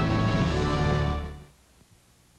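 Background music holding sustained chords, fading out about a second and a half in, followed by near silence.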